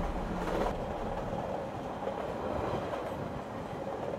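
Steady noise of a train running along the tracks, used as the background sound of the carriage.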